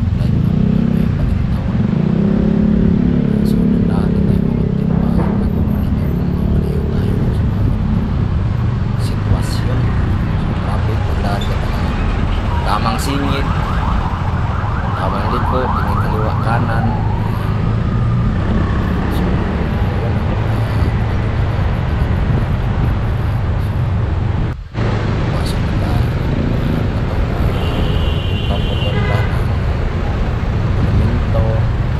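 Motorcycle engine running while riding through dense city traffic, with steady road and traffic noise. About halfway there is a brief warbling electronic tone, and near the end a short run of beeps.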